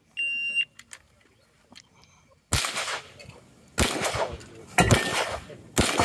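A shot timer gives a single short, high start beep. About two and a half seconds later a GSG Firefly .22 LR pistol with a muzzle brake begins firing, its shots coming in quick groups roughly a second apart.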